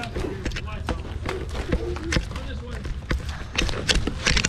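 Quick, irregular footsteps of people hurrying away on foot over pavement, with faint children's voices under them.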